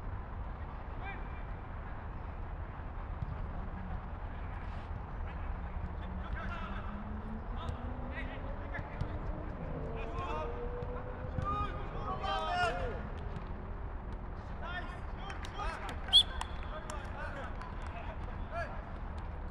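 Footballers shouting and calling to one another across an outdoor pitch over a steady low rumble. The calls grow busiest around the middle. A single sharp thump of a football being struck comes near the end and is the loudest sound.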